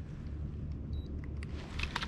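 Low steady rumble on the action-camera microphone, with a faint short electronic beep about a second in as the digital fish scale is switched on.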